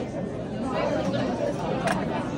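Chatter of many voices in a busy school cafeteria, with a short sharp click near the end.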